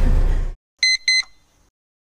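Low coach-cabin rumble that cuts off suddenly, then two short electronic beeps a third of a second apart: an edited-in transition sound effect.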